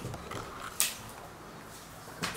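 Quiet room tone with a single short, sharp click just under a second in.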